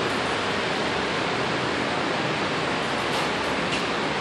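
Steady, even rushing noise of air-filtering machines running, cycling and filtering the air of a lead-abatement work area.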